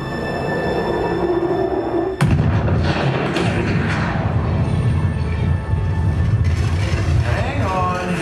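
Film soundtrack of a planetary collision played through a theater's sound system: music swells, then about two seconds in a sudden loud boom breaks in and runs on as a deep, steady rumble under the music.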